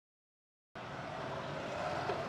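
Dead silence, then about three-quarters of a second in a steady background noise of the room and its surroundings starts and holds evenly.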